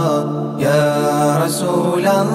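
Arabic devotional madh song chanted by voice over a steady low drone, the melody held and bending between lines, with a brief break about half a second in.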